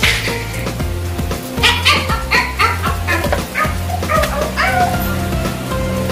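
Background music with a steady beat, with a dog giving a run of short barks through the middle.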